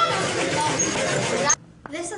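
Several children talking and calling out at once in a busy room over a steady rushing noise; it all cuts off abruptly about one and a half seconds in.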